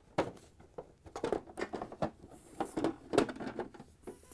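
Hard plastic refrigerator ice bin being handled: a run of irregular clicks and knocks as the cover's tabs are pushed in to lock and the bin is turned over, with a brief rustle midway.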